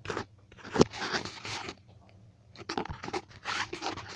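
Handling noise from a handheld phone camera being swung about: irregular rustling and scraping bursts, with a sharp knock just under a second in.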